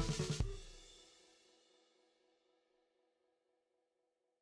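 Background music with a drum-kit beat and cymbals that stops about half a second in, the last cymbal ringing out briefly, followed by near silence.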